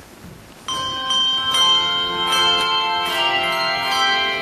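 Handbell choir ringing handbells: the piece starts about two-thirds of a second in with a struck chord, followed by more chords every second or so, each ringing on and overlapping the next.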